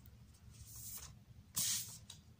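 Glossy photo prints sliding against one another as the top sheet is pulled off a stack: a soft swish a little under a second in, then a louder, short swish near the end.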